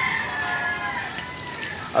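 A rooster crowing in the background: one long drawn-out call that falls slightly in pitch and fades out a little after a second in.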